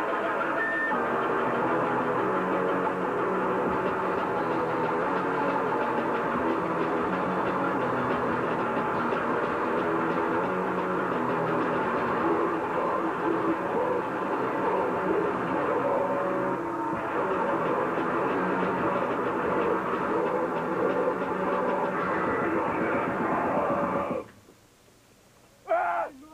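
Noisecore band playing live: a dense, unbroken wall of distorted guitar and drums that cuts off abruptly at the end.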